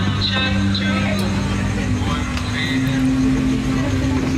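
People talking over background music with long, steady low notes that shift pitch about halfway through.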